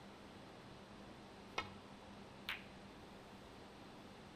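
A snooker shot: two sharp clicks about a second apart, the first the louder, as the cue ball is struck and meets a red, over quiet arena room tone.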